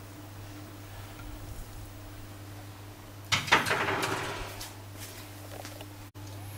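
Low steady hum, then about three seconds in a sudden scraping rustle of hands handling food and cupcake-paper moulds on a ceramic plate, fading over a second or so.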